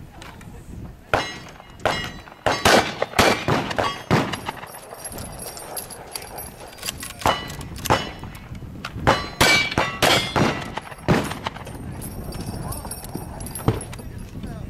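Gunshots from a cowboy action shooter working through a stage. A quick string of about eight shots comes in the first few seconds, then a lull, then more shots spaced about half a second apart, some followed by a thin high ring from the struck steel targets.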